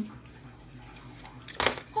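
Metal clip and ring hardware on nylon dog leashes and collars clinking as a leash is handled: a few light clicks, then a louder jangle about a second and a half in.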